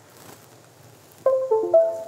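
Low room hiss, then about a second and a quarter in a short electronic chime of a few stepped notes: the Windows sound for a USB device being plugged in, as the flight controller's serial port comes back.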